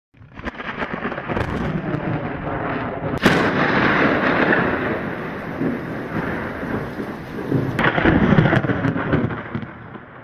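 Rolling thunder, with a sharp crack about three seconds in and another near the end.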